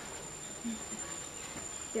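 A steady, high-pitched insect trill, unbroken, with faint voices underneath.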